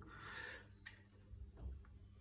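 Faint handling of a plastic handlebar phone mount as it is fitted: a soft hiss in the first half second, then a single small click just under a second in.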